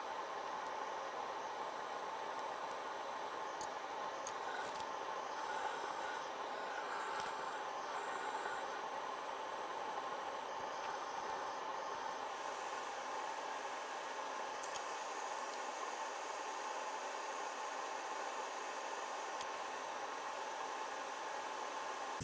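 Bench fume extractor fan running, a steady rushing hiss that starts abruptly and holds an even level throughout.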